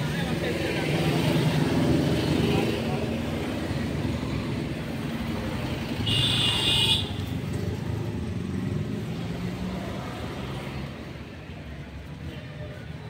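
Road traffic with a motor vehicle running close by, its engine rumble loudest in the first few seconds and then fading. A horn sounds once for about a second, a little past the middle.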